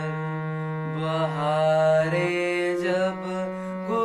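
Harmonium holding a steady low drone note and chords, with a young male voice singing a long, wavering melodic line over it that swells about a second in.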